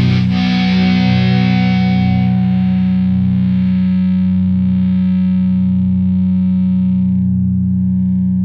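Heavy rock music ending on a held, distorted electric guitar chord with heavy effects. The chord is struck once more just after the start, then rings on, its bright upper tones fading over several seconds while the low notes sustain.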